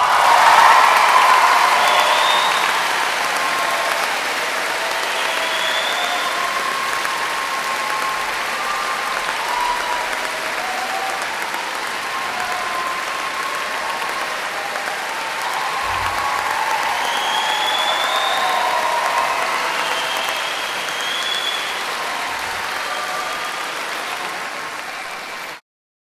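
Audience applause in a concert hall with scattered cheering. It goes on steadily and cuts off suddenly near the end.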